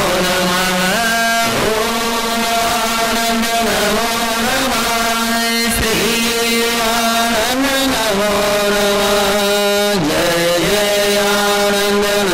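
A man's voice chanting a mantra in long held notes, stepping between a few pitches with short glides between them.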